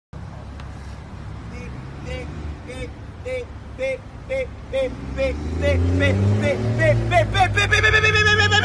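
A man's voice imitating a car's reversing-sensor beeps: short 'beep' calls about two a second that come faster and rise in pitch toward the end, as a real sensor does nearer an obstacle. Underneath, the reversing car's engine runs with a low hum that grows louder in the second half.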